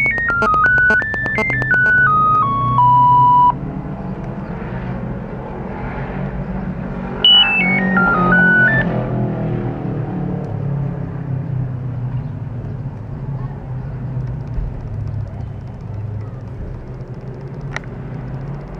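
Nokia 9000 Communicator ringing for an incoming call that goes unanswered: a monophonic ringtone melody of single beeping notes, mostly stepping downward. It plays once in full and again briefly about seven seconds in, over a steady low background noise, with a single click near the end.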